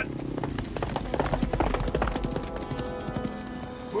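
Film soundtrack music with sustained held notes over a dense, uneven run of sharp clattering knocks.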